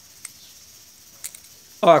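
Two faint, light metal clicks about a second apart, as a spring washer is worked into a splined part of a CAV rotary injection pump with a small flat tool. Otherwise quiet, with a voice starting near the end.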